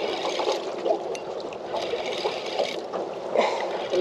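Water sloshing and lapping against the hull of a small boat, a steady, uneven wash.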